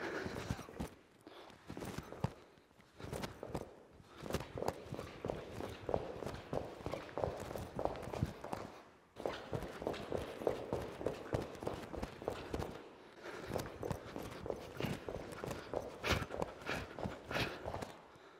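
Sneakers stepping quickly on a rubber gym mat in and out of an agility ladder's squares: a rapid, uneven run of light footfalls and shuffles, with a short break about nine seconds in.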